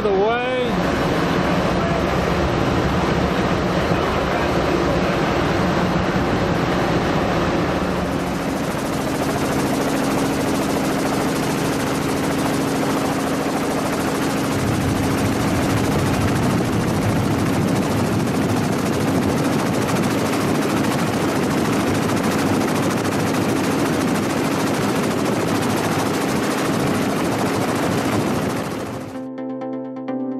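Field audio of ships sinking at sea: a loud, steady rush of wind and water noise over the low hum of engines. Its character shifts about a quarter and halfway through as the footage changes, and it cuts off just before the end, where electronic music starts.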